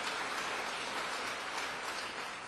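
Audience applause, a steady clatter of many hands clapping that starts to thin out near the end.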